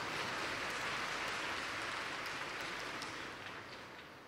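Audience applauding, an even clapping that slowly dies away toward the end.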